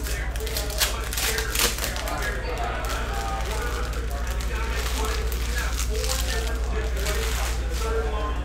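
Trading cards handled and flipped through by hand: a run of quick crisp clicks in the first three seconds, then quieter handling, over a steady low hum and faint background voices.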